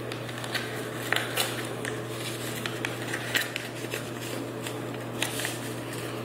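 Folded sheet of paper being unfolded and pressed flat by hand, giving irregular crinkles and crackles, over a steady low hum.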